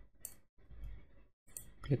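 A few quick, faint clicks of a computer mouse and keyboard as a value is pasted in and sent.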